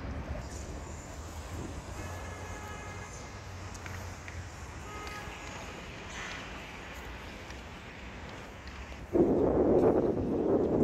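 Outdoor city ambience with a steady low rumble, and faint high tones about two seconds in. About nine seconds in, a loud rush of noise starts suddenly and holds to the end.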